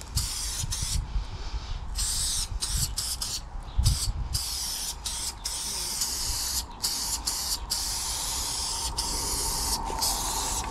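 Aerosol spray-paint can hissing in strokes, cutting off and restarting many times between passes, with its longest breaks about a second in and around four seconds in. A low rumble on the microphone, loudest about four seconds in.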